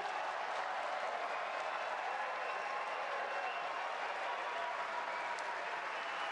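Large audience applauding steadily, a dense even clapping.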